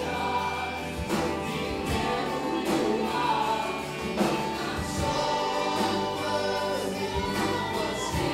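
A live worship band playing a song, several voices singing together over acoustic and electric guitars, keyboard and drums, with a steady beat.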